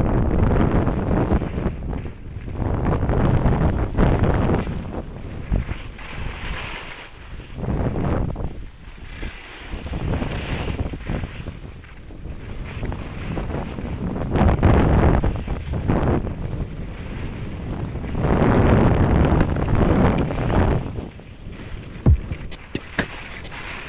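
Wind rushing over an action camera's microphone during a downhill ski run, mixed with the hiss of skis on packed snow. It swells and eases every few seconds.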